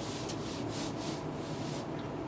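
Paper rubbing and rustling as a worksheet sheet is handled and slid on the desk, a string of irregular soft scrapes.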